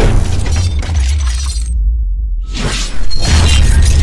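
Cinematic logo-intro sound design: music with a heavy, continuous bass rumble and crashing, shattering impact effects. The treble cuts out for about a second in the middle, then a loud hit brings it back about three seconds in.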